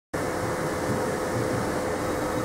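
Steady machine hum: an even rushing noise with a constant mid-pitched tone running through it.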